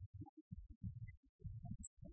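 Faint, muffled low thumping in uneven bursts, with almost nothing above the bass range.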